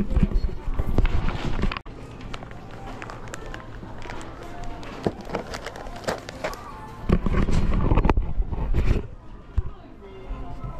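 Shop ambience: background music and indistinct voices of shoppers, with scattered clicks and knocks. A heavy low rumble comes in bursts in the first two seconds and again from about seven to nine seconds in.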